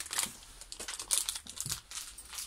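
Rustling and small irregular clicks as a black belt and its buckle are handled and worked in the hands.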